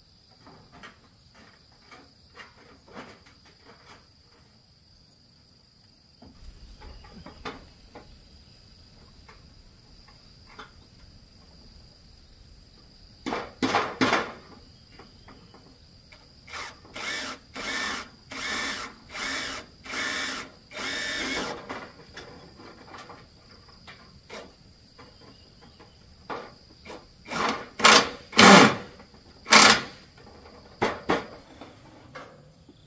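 Cordless drill driving screws through a corrugated roofing sheet into a wooden frame, in short bursts of the trigger: a pair about halfway through, a quick run of about six, then louder ones near the end. Light knocks and taps come between them, over a steady high insect buzz.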